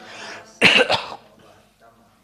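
A person coughing and clearing the throat: two quick, loud bursts a little over half a second in, after a softer rush of breath.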